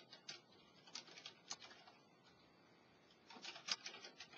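Faint computer keyboard typing: short runs of keystroke clicks, one about a second in and a denser one near the end.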